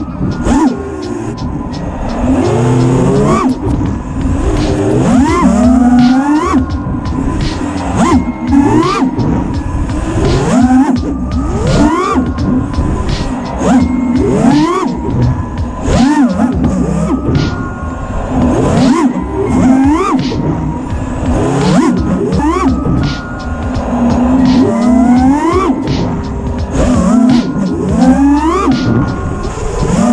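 FPV racing drone's brushless motors whining, the pitch sweeping up about once a second with each throttle punch, over background music.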